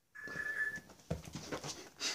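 A cat's thin, high, steady cry lasting under a second, followed by soft breathy sounds.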